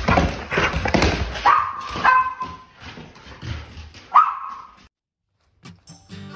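A dog barks three short times, about a second and a half in, at two seconds and just after four seconds. Before the barks there is quick clicking from its claws on a bare plywood floor.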